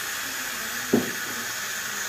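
Dental high-volume evacuator suction running with a steady hiss, with one brief low sound about a second in.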